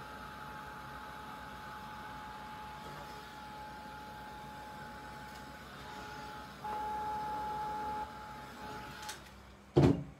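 Small handheld hair dryer running with a steady whine, louder for about a second and a half past the middle, then cutting off about a second before the end. A single sharp knock follows just after it stops.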